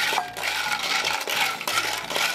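Dry penne pasta rattling and clattering against a nonstick frying pan as it is stirred with a wooden spoon, being toasted in oil; a dense run of small clicks and scrapes.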